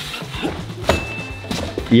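Background music, with a single thud about a second in: a man dropping off a pommel mushroom onto a padded gym mat, landing on his knee.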